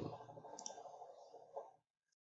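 Low room noise with two faint clicks, about half a second in and again near the end. The sound then cuts off abruptly to dead silence.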